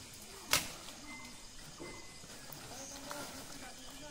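A single sharp crack about half a second in, over a faint background.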